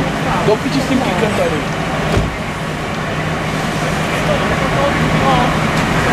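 Steady hum of engines and road traffic with a constant low drone, overlaid by people talking in the first second or so and again near the end; a single sharp knock a little over two seconds in.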